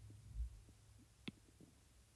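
Near-quiet room tone with a low hum, broken by one dull thump about half a second in and a single short click about a second later.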